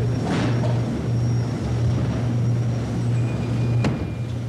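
A steady low-pitched hum, with a short rustle about half a second in and a sharp click near the end.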